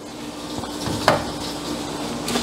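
Rustling and handling noise from a person moving about, with one sharp knock about a second in, over a steady low hum.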